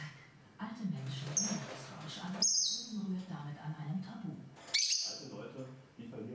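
A pet lovebird giving three short, shrill chirps: one about a second and a half in, a slightly longer one that steps down in pitch at about two and a half seconds, and a loud one near the five-second mark. A man's voice talks low in the background.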